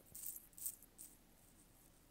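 A few brief, soft hissy rustles in the first second, then near silence with faint room tone.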